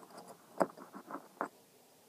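Light, irregular metal clicks and scrapes of fingers handling a small nut on a throttle linkage, with sharper clicks about half a second in and again near a second and a half.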